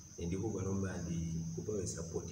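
A man talking, over a thin, steady high-pitched whine that holds one pitch throughout.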